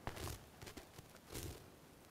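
A click followed by a few short, faint rustles of handling noise close to a microphone, the second about a second and a half in.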